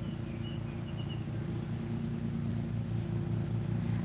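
A steady engine hum that grows slowly louder, with a few faint high chirps in the first second.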